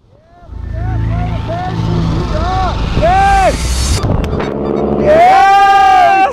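Wind buffeting the camera microphone under an open parachute, with a person whooping in short rising-and-falling calls. After a sudden change about four seconds in, a long, loud shout of joy follows.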